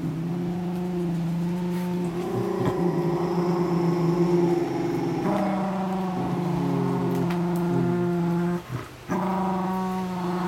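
A dog making long, low, drawn-out moaning growls, each held for a few seconds with brief breaks between them.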